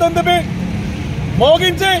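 A man speaking loudly, in two short phrases separated by a pause, over a steady low rumble of street noise.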